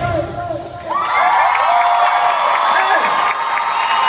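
Concert crowd cheering and screaming as the band's music stops; after a short lull, many high voices swell up about a second in and hold loudly.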